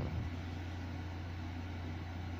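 A steady low hum under a faint, even hiss.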